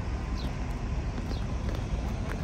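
Steady outdoor rumble of wind and distant traffic, with a few short, faint, high chirps from birds about once a second.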